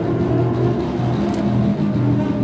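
Improvised small-ensemble music with low, held bass notes coming and going under fainter higher lines.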